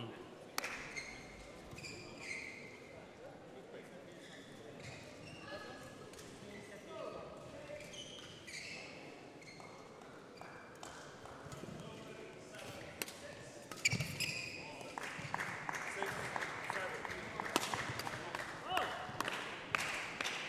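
Faint sports-hall ambience with distant voices, then from about two-thirds of the way in a badminton rally: sharp racket hits on the shuttlecock and players' shoes on the court floor.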